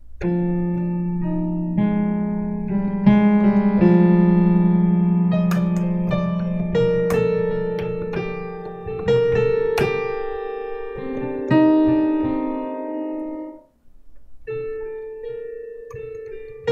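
Piano sound from a software instrument, played on an Arturia MicroLab MIDI keyboard: slow two-handed chords held by the keyboard's Hold button, which acts as a sustain pedal, so the notes ring on and overlap as they fade. The sound stops abruptly about three-quarters of the way through, and a new chord starts a second later.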